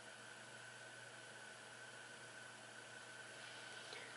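Near silence: steady room hiss.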